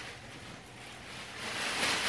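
Soft rustling of clothing being handled, swelling louder near the end.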